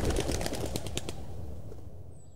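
Scattered hand clapping from an outdoor crowd, irregular sharp claps over a low murmur, fading out steadily.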